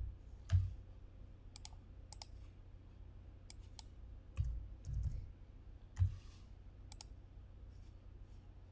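Computer mouse clicks and a few keystrokes, about a dozen sharp irregular clicks spread out, with a few duller low knocks around the middle.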